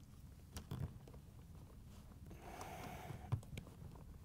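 Faint handling noises as a plastic dishwasher pump is pushed up into its rubber motor-to-sump seal: a couple of light knocks, a short scuffing noise a little past halfway, then a click.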